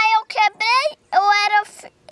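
A young child's high-pitched voice in three short phrases; speech that the recogniser did not write down.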